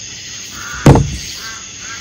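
A single loud, sharp knock about a second in, with a short low thump beneath it, over a steady faint high hiss.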